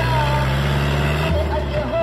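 New Holland Dabung 85 tractor's diesel engine working under load, its pitch rising for just over a second and then dropping suddenly. Music with a singing voice plays over it.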